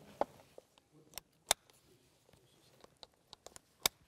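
Child car seat harness being buckled: a few short, sharp clicks of the harness tongues and buckle. The two loudest come about a second and a half in and near the end.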